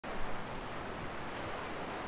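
Steady rushing ambience of wind and surf, a little louder in the first half-second.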